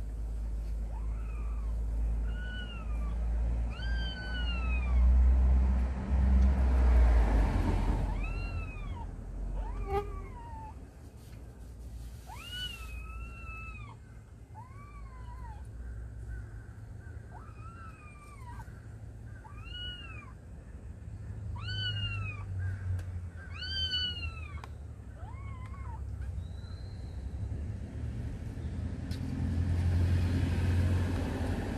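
A cat meowing over and over: about twenty short, high, rising-and-falling meows, roughly one every second, that stop a few seconds before the end. A low rumble sits underneath, strongest in the first several seconds, with a rushing noise swelling about seven seconds in.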